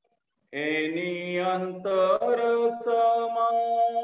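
Devotional Jain bhajan singing: after a brief silence, voices come in about half a second in with long held, drawn-out notes over a steady underlying tone.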